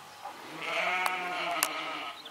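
A sheep bleating once: a single long bleat of about a second and a half, with two short clicks during it.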